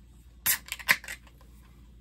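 Aluminium beer can being cracked open: a sharp crack of the pull tab about half a second in, then several smaller clicks.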